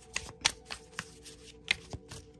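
Oracle cards being handled as the next card is drawn from the deck: a run of short, sharp card clicks and taps, with two louder ones about half a second in and near the end.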